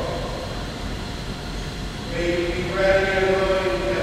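A single voice singing long, held notes in a reverberant church. It pauses for the first two seconds and comes back about two seconds in.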